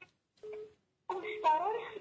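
A person's voice making wordless sounds: a short hummed tone, then a drawn-out vocal sound that slides up and down in pitch.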